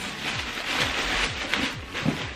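Thin clear plastic packaging crinkling and rustling as it is pulled and torn off a backpack. Under it runs background music with a steady, low, thudding beat.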